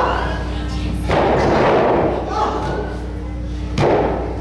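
Bodies hitting a wrestling ring: a heavy thud about a second in that trails off over the next second, then a sharp single slam near the end. Crowd voices come through in between.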